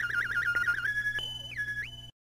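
Background music fading out: a high wavering synth tone that moves to a few held higher notes as it grows quieter.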